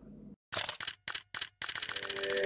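Rapid burst of camera shutter clicks, about ten a second with short breaks, starting about half a second in: an SLR-style shutter firing in continuous mode, used as the sound effect of a photography channel's intro.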